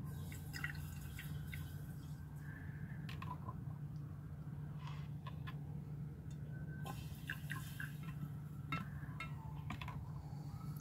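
Bleach squirted from a pipette into a glass beaker of hydrochloric acid and gold-plated fingers, heard as faint drips and small scattered clicks over a steady low hum. The bleach is added to speed up the dissolving of the gold.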